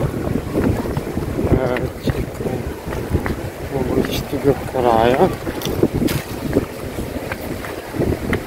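Wind buffeting the microphone as a steady low rumble, with snatches of people's voices over it; one voice rises and falls about five seconds in.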